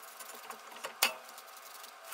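Lug nut spun by hand onto a wheel stud: faint metallic clicking and rattling, with one sharper click about a second in.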